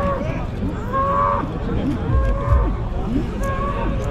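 Bull bellowing in short, repeated calls, about one a second.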